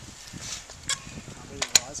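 A few sharp mechanical clicks from road bicycles being handled at a standstill: one about a second in and a louder pair shortly before the end.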